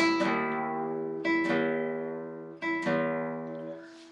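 Nylon-string guitar strings plucked and left to ring, in pairs about every second and a half, while the low string is retuned between drop D and standard tuning.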